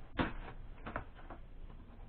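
Cardboard shipping box being opened by hand, its packing tape being cut along the top seam: a sharp scrape on the cardboard just after the start, then a few fainter scrapes and taps around the one-second mark.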